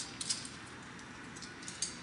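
A few light, sharp clicks and rattles as a duffel bag is picked up off the concrete floor, over a steady low hiss.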